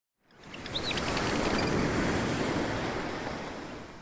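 Water or waves sound effect: a rushing noise that swells in, holds, and fades away, with a few short high chirps about a second in.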